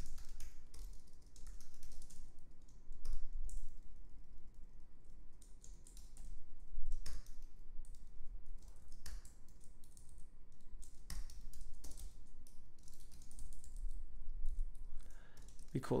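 Computer keyboard typing: irregular runs of keystrokes broken by short pauses.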